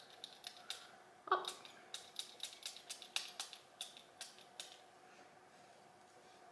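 Spray pump of a nearly empty Jo Malone Oud & Bergamot cologne bottle clicking as it is pressed over and over, about twenty quick clicks that stop after about four and a half seconds; the bottle is almost spent and gives only a tiny bit of spray.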